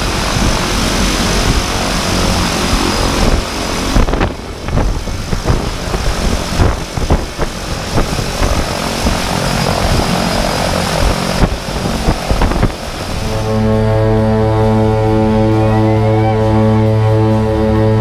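Propeller plane's engines running close by, a dense rushing noise broken by a few knocks and abrupt cuts. About 13 seconds in, background music with steady sustained chords takes over.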